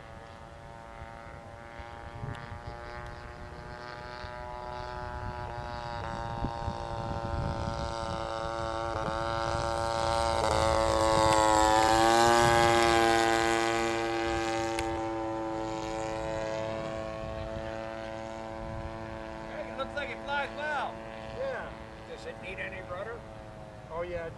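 VVRC 20cc gasoline twin engine of a Robin Hood 80 radio-controlled model plane in flight, making a low pass. The engine note swells to its loudest about halfway through, drops in pitch as the plane goes by, then fades as it climbs away.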